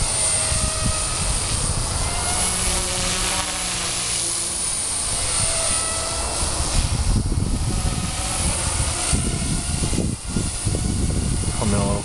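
Electric RC helicopter (Walkera 4F200 fitted with a Turbo Ace 352 motor on an 18-tooth pinion) in flight: a steady motor and rotor whine whose pitch drifts up and down as it manoeuvres.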